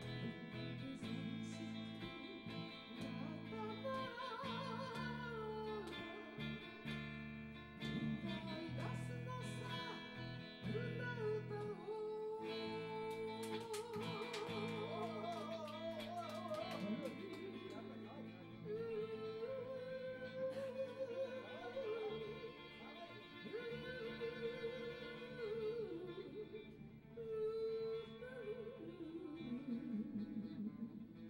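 Two guitars playing a slow ballad together: one carries the melody with wide vibrato and slides between notes, the other accompanies underneath.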